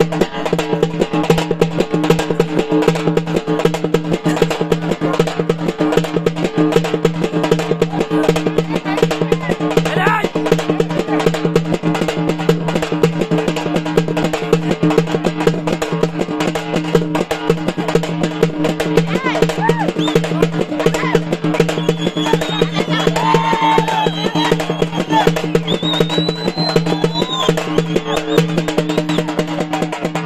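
Music with fast, continuous drumming over a steady droning tone. Voices or calls rise above it in the last third.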